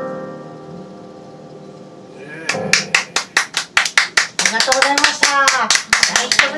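A final piano chord rings and fades away, then a small audience starts clapping about two and a half seconds in, with voices calling out among the claps.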